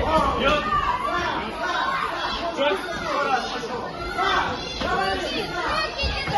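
Several voices talking and calling out at once: spectators' chatter and shouts around the ring.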